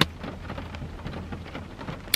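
Heavy rain drumming on the car's roof and windows, heard from inside the cabin as a steady hiss with fine patter, over a low steady hum.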